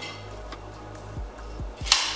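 Soft background music with a few light handling knocks, then one sharp click near the end as the metal scooter deck is turned and lowered in the hands.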